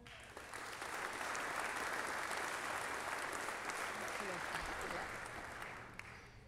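Audience applauding: a steady patter of many hands clapping that builds up within the first second, holds, and fades out near the end.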